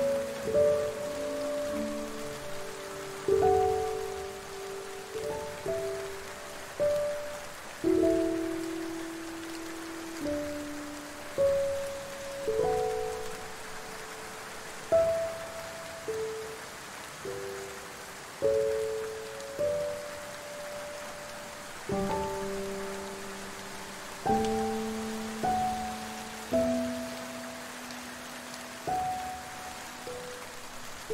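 Slow, soft piano melody, single notes and small chords struck every second or two and left to ring and fade, over a steady hiss of falling rain.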